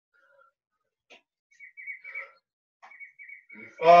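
A small bird chirping: two quick runs of short high chirps, with a few faint taps in between.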